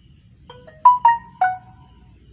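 Samsung Galaxy M10 phone playing its marimba-like notification chime: a quick run of five bright notes within about a second, the last three loudest.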